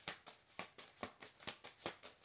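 A tarot deck being shuffled by hand, with a run of soft card snaps about four or five a second.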